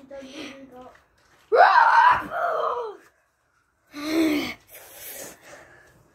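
A boy's loud, wordless shout about a second and a half in, lasting about a second and a half, then a shorter cry and a breathy rush near four seconds in.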